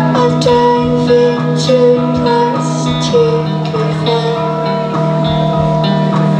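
Live rock band playing electric guitars over a drum kit, with sustained guitar notes and cymbal hits throughout.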